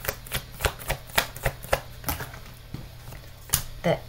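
A deck of tarot cards being shuffled by hand: a run of sharp card snaps and taps, about three a second, thinning out, with one louder tap near the end.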